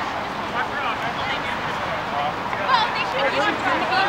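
Several distant voices shouting and calling out across an open field, overlapping in short bursts, over a steady background hiss.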